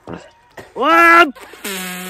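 A man's strained vocal sounds of effort as he holds another man's weight on his shoulders: a short cry that rises and falls about a second in, then a long, rough, held groan.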